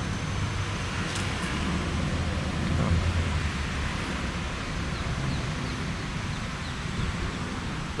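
Steady outdoor background noise: a low rumble under a faint hiss, swelling a little about three seconds in.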